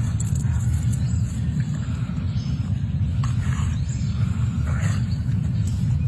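Audio of an outdoor phone video: a steady low rumble on the microphone, with faint, scattered higher sounds above it.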